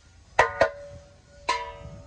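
A large brass basin tapped by hand three times, twice in quick succession and once more about a second later, each tap giving a short bright metallic ring.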